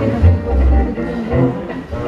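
Double bass played with a bow in a jazz band: a short low note, then a longer held low note within the first second, with other instruments sounding over it.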